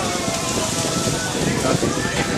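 Water pouring in a steady stream from a silver pot onto a Shiva lingam and splashing into the metal basin around it.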